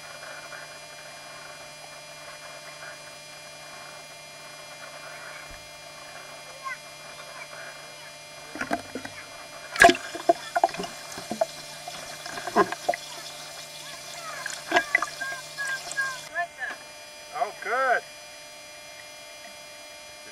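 Pool water splashing and sloshing close to the microphone. The loudest splash comes about ten seconds in, and children's voices call out over the splashing in the second half. A steady low hum runs under the quieter first part.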